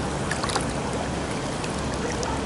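Pool water splashing and sloshing around a swimmer doing breaststroke kicks and glides: a steady rushing wash with a few small splashes.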